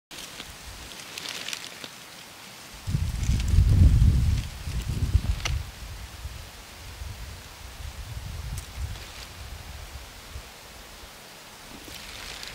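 Outdoor woodland ambience with faint rustling and a low rumble that swells in gusts, loudest about three to five seconds in, with a few soft ticks scattered through.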